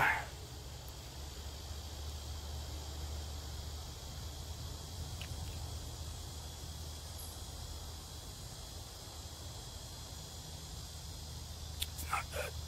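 Quiet summer woodland ambience: a steady faint high insect drone over a low rumble, with a small click about five seconds in.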